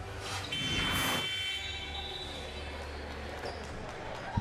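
Broadcast transition sound effect: a whoosh with a bright ringing tone, lasting about a second and a half, accompanying a logo wipe. It fades into low gym ambience with a steady hum.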